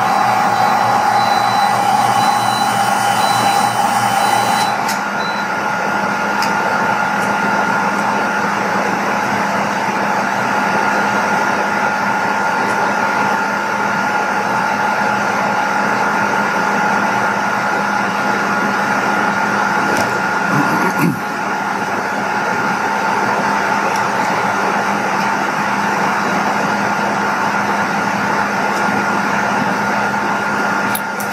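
Steam-driven Tesla (bladeless disc) turbine and its generator running steadily under load: a broad steam hiss with several steady whining tones. About five seconds in one higher tone drops away and the sound settles slightly quieter.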